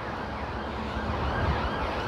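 Emergency-vehicle siren, faint, its pitch rising and falling over and over above a steady rumble of road traffic.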